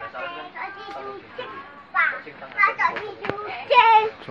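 Young children's high-pitched voices chattering and calling out, loudest in bursts halfway through and near the end, with one sharp click a little past three seconds in.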